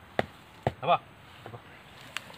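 Two sharp chopping strokes about half a second apart: a machete hacking into the ground and undergrowth, part of a steady run of strokes.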